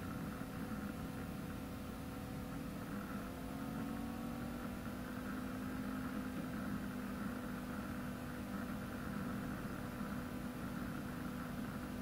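A car engine running steadily, its pitch drifting slightly upward for a few seconds, under a steady hum.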